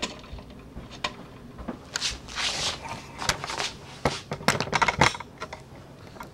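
Handling noise as the camera is carried and set in place: a scattered run of sharp clicks and light knocks, with a few brief rustles and scrapes, thickest shortly before the end.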